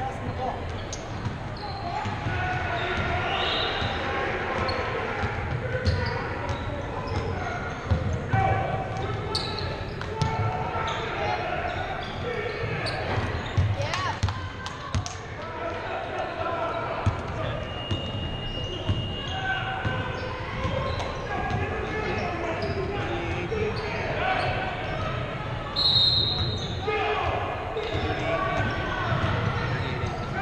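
Basketball game sounds echoing in a large gym: a ball bouncing on the hardwood court, with many short knocks, amid indistinct voices of players and spectators calling out.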